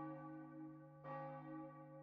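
Quiet background music of sustained bell-like tones, with a soft new bell-like stroke about a second in that fades away.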